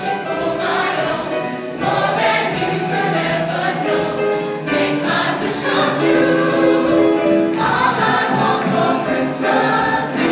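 Mixed show choir of men and women singing in harmony, moving through chords with a long held chord a little past the middle.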